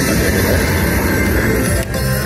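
Video slot machine playing its loud bonus music and win sounds during a big multiplied win in a free-spin bonus round.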